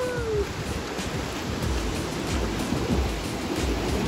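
Ocean surf washing onto a beach: a steady rush of noise, with low gusting rumbles of wind on the microphone.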